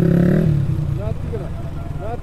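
KTM Duke 200's single-cylinder engine running at steady revs, its note falling away about half a second in and dropping to a low rumble as the bike rolls slowly along a dirt track.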